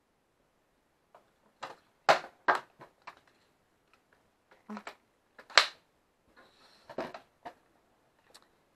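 Sharp clicks and knocks of a plastic Fiskars paper trimmer being handled, lifted and set back down, about a dozen in all, the loudest about two seconds in and about five and a half seconds in.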